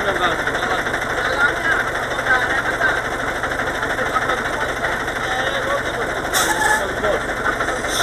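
Mercedes-Benz dump truck's diesel engine idling steadily, with a man's voice talking over it and a short hiss a little after six seconds in.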